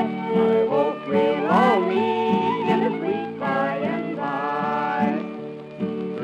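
Old-time Texas fiddle music from a remastered 1920s recording: bowed fiddle notes that slide between pitches over a steadier accompaniment.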